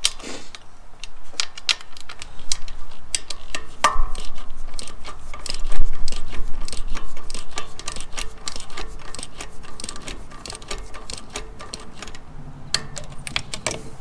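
Socket ratchet clicking in quick runs as the valve cover bolts of a Can-Am Ryker engine are tightened down toward their 80 inch-pound torque spec. A single metallic clink with a short ring about four seconds in.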